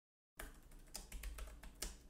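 Typing on a computer keyboard: a quick run of faint key clicks, starting about half a second in.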